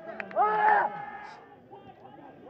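A man's voice: one short exclamation about half a second in, then only faint background noise.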